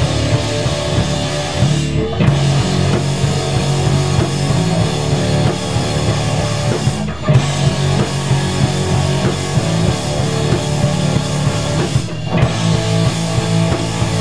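Rock band playing live: electric guitars, bass guitar and drum kit together, with a short break about every five seconds.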